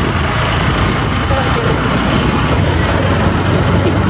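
Motorcycle running under way, with a steady rush of wind on the microphone over the low engine hum.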